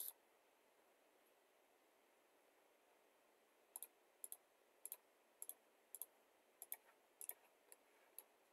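Computer mouse button clicking: near silence at first, then from about halfway in a run of about eight quick clicks, roughly half a second apart, each a close press-and-release pair, as points are picked one after another.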